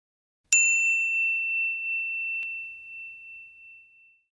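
A single clear, high bell-like ding for a record label's logo, struck once and left to ring and fade over about three seconds, with a faint tick partway through.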